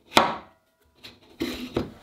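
A steel shaft knocking into place in a plywood housing with turned bushings as it is fitted by hand: one sharp knock just after the start that rings briefly, followed by fainter handling sounds.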